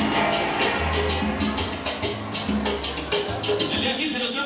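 Salsa music played loud over a sound system, with a steady percussion beat and a pulsing bass line.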